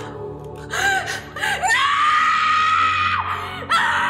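A woman's anguished cries: short gasping sobs, then a long high scream held for over a second, and another cry breaking out near the end, over dramatic film score music.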